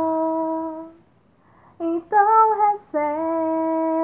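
A woman singing unaccompanied, without words: a long held note that fades out about a second in, a short pause, a few brief notes, then another long, steady held note.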